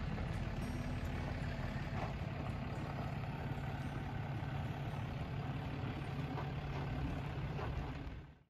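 A vehicle engine running with a steady low hum.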